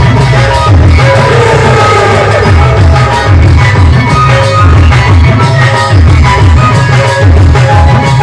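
Loud live stage-band music: a heavy, repeating low drum beat under held keyboard notes and a melody.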